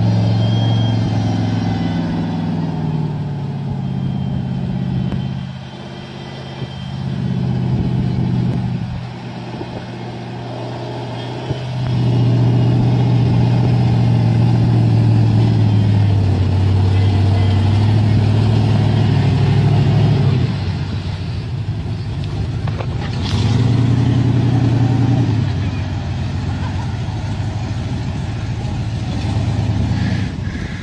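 A Jeep's engine revving and labouring as it drives through deep water, the note rising and falling with the throttle. It eases off for a few seconds, then climbs again about twelve seconds in. The engine keeps running while the Jeep is half under water.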